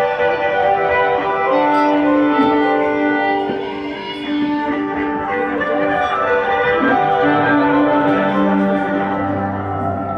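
Live music played on the Magic Pipe, a homemade instrument of steel pipes with a bass string, heard through the club's sound system: layered long held notes with a bowed, string-like tone. A low bass note comes in about eight seconds in.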